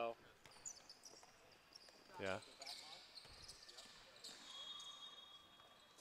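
Faint sounds of a basketball game on an indoor hardwood-style court: short high sneaker squeaks and an occasional ball bounce.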